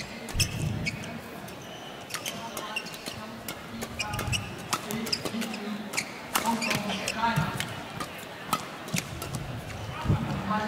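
Badminton rally in an indoor hall: rackets striking the shuttlecock in a quick exchange of sharp cracks, mixed with shoe squeaks on the court.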